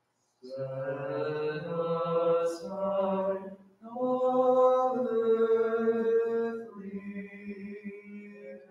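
Byzantine liturgical chant: voices singing long held notes in two phrases with a short break just before four seconds in. The singing grows softer near the end.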